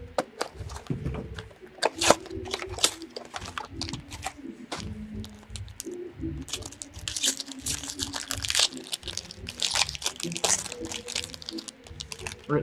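Clear plastic shrink wrap crinkling and tearing as it is stripped off a sealed trading card box, and the cardboard box being opened, with dense crackling in the second half.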